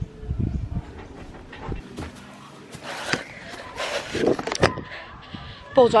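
Scattered knocks, scrapes and low thuds of someone clambering over a wooden fence with a handheld camera, a couple of low thumps in the first second and sharper clicks and rustles after that.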